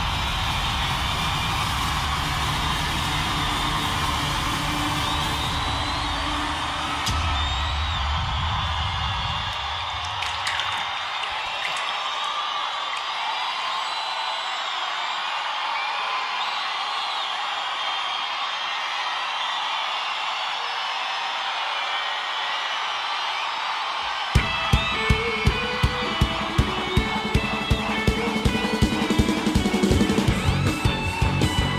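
Opening of a live worship-music track: a crowd cheering and whooping over sustained low music that thins out about ten seconds in. About 24 seconds in, a steady beat of sharp strokes, roughly two a second, comes in.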